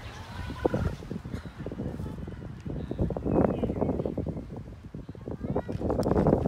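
Outdoor park background: indistinct voices of people nearby, rising a little about halfway through, mixed with handling noise close to the microphone.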